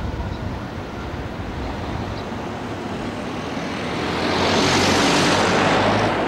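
Road traffic noise, with a motor vehicle passing close by: a steady hum that swells into a loud rushing pass about four to five seconds in.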